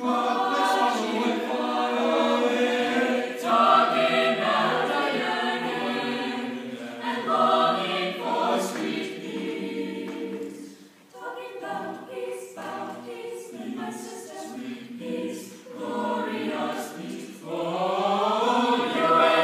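Mixed choir of teenage voices singing sustained phrases, with a brief break about eleven seconds in.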